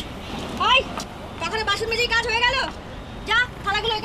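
A high-pitched raised voice speaking in short phrases, over a steady background of street traffic noise.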